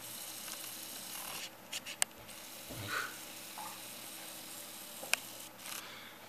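Handling noise from a handheld camera being repositioned: rubbing against the microphone for the first second or so, then sharp clicks about two seconds in and again about five seconds in.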